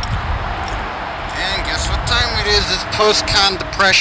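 People's voices talking, starting about a second in and growing clearer near the end, over a steady low rumble on the camcorder microphone.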